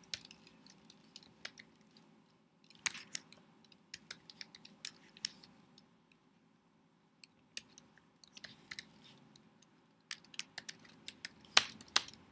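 Typing on a computer keyboard: irregular runs of key clicks, with a short pause just past halfway.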